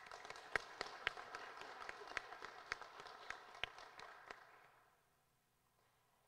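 Thin applause from a small group, with single hand claps standing out, dying away about five seconds in.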